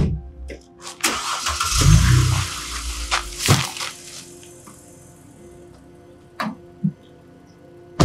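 Background music over car sounds: a rushing noise with a low rumble for about three seconds, then separate knocks as the boot lid of a Mercedes-Benz C300 saloon is handled and shut, with a heavier thud at the very end.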